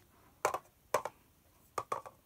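Hard plastic sport-stacking cups clacking as they are set down and stacked: two short knocks about half a second apart, then two quick ones close together near the end.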